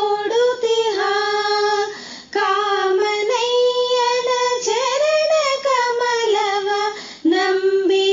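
A high female voice singing a Kannada devotional song in raga Gaurimanohari. She holds long melodic notes, with short breaks about two seconds in and again near seven seconds.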